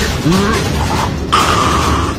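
Anime fight-scene sound effects: a steady noisy rumble with a short rising glide near the start and a held steady tone through the second half.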